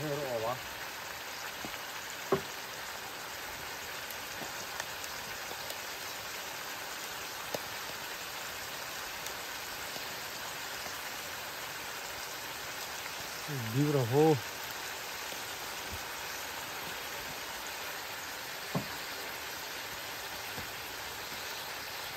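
Steady sizzle of squirrel meat frying in oil in a wok over a wood fire, with an occasional sharp click.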